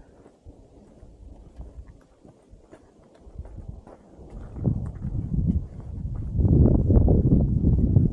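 Shoes scuffing and stepping on sandstone as hikers edge along a narrow rock ledge. A low rumbling noise on the camera microphone grows loud in the second half.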